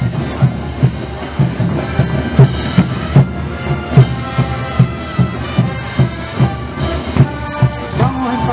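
Tinku music: a steady bass drum beat, about two to three strokes a second, under held wind-instrument tones.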